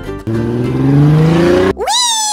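Sound effect of a car engine revving up, its pitch rising for about a second and a half, then cut off sharply and followed by a whistle that shoots up in pitch and slides back down.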